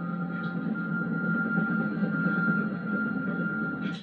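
Tense film score played through a television's speakers: a sustained low drone with a steady high held tone, cutting off suddenly near the end.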